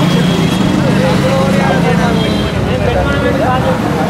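Several people talking at once, overlapping and indistinct, over a low steady engine hum from road traffic that drops away about halfway through.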